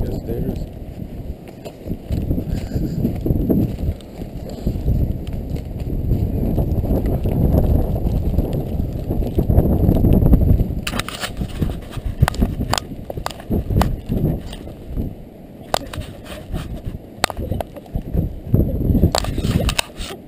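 Walking through snow with a body-worn camera: steady rumbling and rustling of clothing and wind against the microphone, with footsteps. From about halfway on, a run of sharp knocks and clacks.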